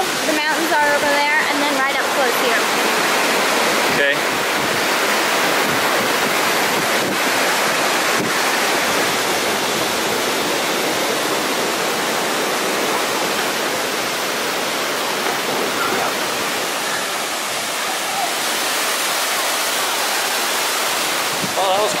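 Waterfall cascading down a rock cliff: a steady, loud rush of falling water. Faint voices are heard in the first two seconds.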